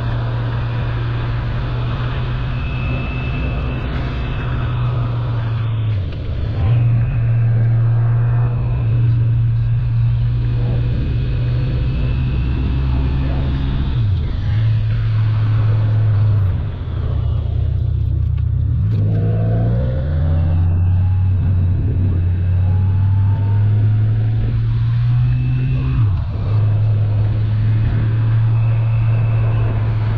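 Motorcycle engine running at road speed with wind noise, its note steady but briefly dipping and stepping between pitches a few times as the rider shifts gear, with a spell of lower revs near the middle before it picks up again.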